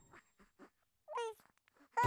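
An infant's single short cry a little over a second in, high-pitched and rising then falling, with near silence and a few faint ticks around it.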